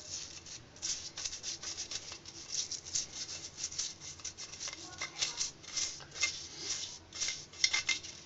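Toothbrush bristles scrubbing the wet chambers of a formicarium, in quick irregular back-and-forth strokes, a few a second.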